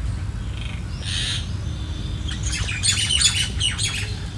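Common mynas calling: a single harsh squawk about a second in, then a rapid run of chattering calls, the loudest part, from about halfway to near the end, over a steady low rumble.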